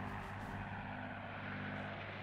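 Propeller aircraft engines droning steadily and fairly quietly.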